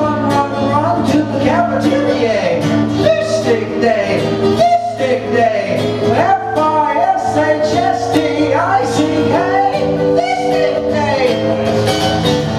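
A man singing with his own strummed acoustic guitar in a steady rhythm, played live.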